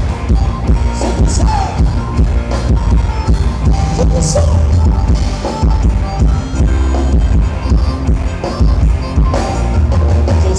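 Thai ramwong dance music from a live band, with a drum kit and a heavy bass beat.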